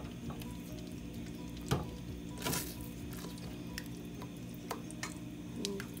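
Silicone spatula stirring thick mole in a stainless steel pot as it is reheated on the stove, with scattered light knocks against the pot and a short scrape about two and a half seconds in.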